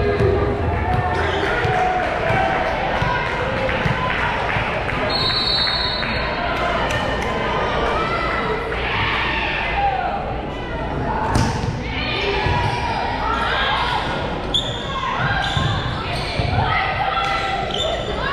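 A volleyball bouncing on a hardwood gym floor and being struck: the server bounces it, then comes the serve and rally hits. The hits ring and echo in a large gymnasium over steady crowd chatter, with a short high whistle about five seconds in.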